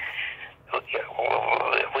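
Speech only: a man talking in a conversation, with a brief pause about half a second in.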